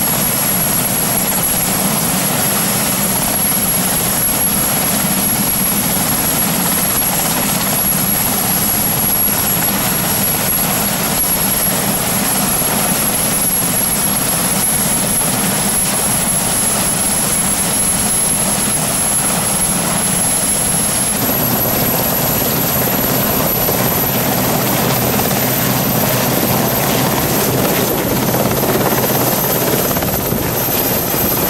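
Westland Sea King helicopter's twin turboshaft engines and main rotor running at close range, a steady loud rush with a thin high whine. Near the end the helicopter lifts off into a low hover.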